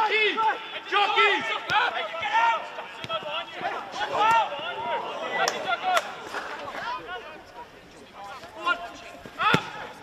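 Footballers shouting and calling to each other on the pitch, with sharp thuds of the ball being kicked, the loudest about nine and a half seconds in.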